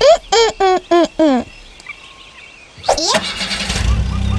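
A cartoon character's voice makes five short high-pitched syllables in the first second and a half. About three seconds in, a rising swoop leads into a cartoon car engine sound effect starting up and running.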